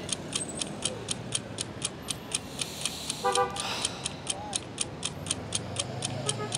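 Steady, even ticking like a clock, about four ticks a second, over low traffic noise. A short car horn toot sounds about three seconds in.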